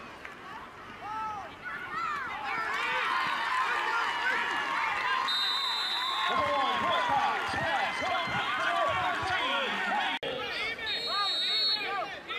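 Football crowd yelling and cheering, many voices swelling about two seconds into a running play. A referee's whistle blows a steady high blast about five seconds in, ending the play, and again near the end.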